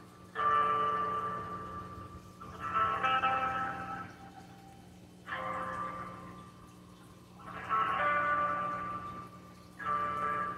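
Telephone hold music playing through a smartphone's speakerphone, thin-sounding like phone-line audio. It comes in phrases of a few notes every two to three seconds, each fading away before the next begins.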